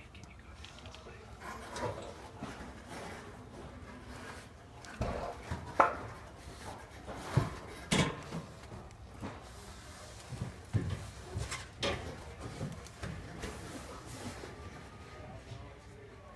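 Irregular knocks and bumps of bodies and hands against steel warehouse racking as people clamber down through it, loudest about six and eight seconds in.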